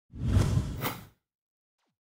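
Whoosh sound effect, about a second long, spread from deep to high pitches.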